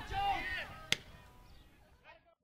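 Voices at a softball game, then a single sharp crack of a softball impact about a second in; the sound fades away near the end.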